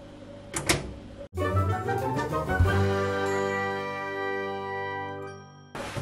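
Short musical sting: a held chord comes in just over a second in and slowly fades over about four seconds before cutting off just before the end. It is preceded by a faint click.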